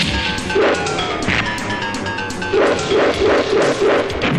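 Fight-scene background score from an Indian film, with dubbed punch and hit sound effects. A rapid series of five short, loud bursts comes in the last second and a half.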